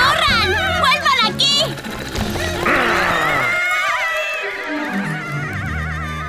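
Cartoon soundtrack: background music under high, wavering character cries, with a steady bass line coming in near the end.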